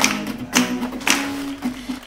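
Acoustic guitar strummed, about two chords a second, the last chord ringing out near the end.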